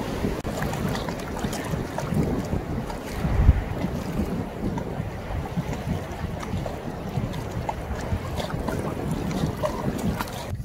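Wind buffeting the microphone over the wash of choppy loch water lapping against shore rocks, with one strong gust about three and a half seconds in.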